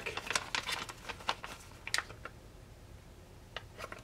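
Clear plastic retail bag with a card header crinkling and crackling as hands pull it open: a quick run of small sharp crackles for about two seconds, then only a few scattered ones.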